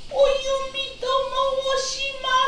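High-pitched jōruri chanting in a child-like voice, drawn out on long notes that stay near one pitch, with short breaks between syllables.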